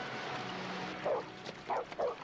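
Cartoon dog barking: two short barks, about a second in and again near the end, over a fading rush of water.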